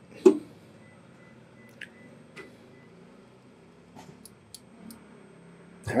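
Qidi Tech X-One2 3D printer's X-axis stepper motor moving the print head carriage in a test move, heard as a faint steady high whine lasting about a second and a half, followed by a few light clicks and ticks. A short loud burst comes near the start.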